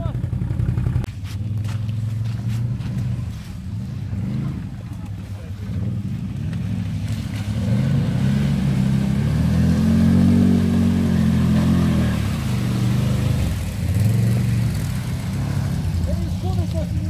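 Can-Am ATV engine revving hard as the quad ploughs through deep mud, the revs rising and falling repeatedly. It is loudest in a long rev about eight to twelve seconds in.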